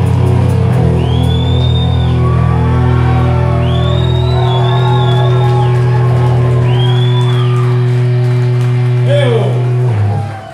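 A live heavy rock band lets a final chord ring on: bass and guitars hold steady low notes with the drums stopped, and high gliding tones sound over them three times. The chord dies away near the end.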